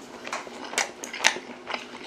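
Close-miked chewing of soft steamed spiny lobster meat: short wet mouth clicks and smacks, about two a second.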